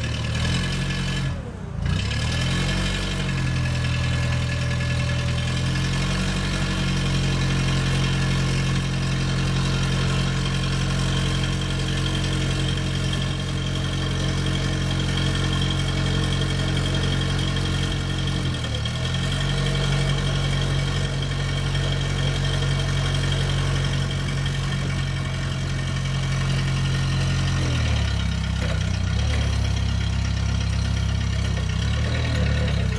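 Propane-fuelled engine of a 1994 Hyster S50FT forklift running steadily. Its speed steps up in the first few seconds and holds while the mast raises the forks, dips briefly about two-thirds of the way through, and drops back near the end.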